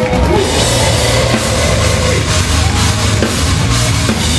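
A metalcore band playing live at full volume: electric guitars, bass guitar and drum kit together in a dense, steady wall of sound.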